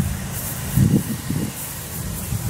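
Footsteps on a grass lawn with the handheld camera jostling: a few irregular low thuds over a steady low rumble.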